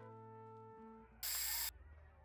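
A few held notes of background music dying away, then a half-second hiss of an aerosol spray-paint can, the loudest sound here.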